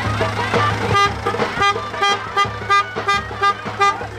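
A vehicle horn honked in a rapid run of short blasts, about three a second, starting about a second in, over loud dance music with a steady bass.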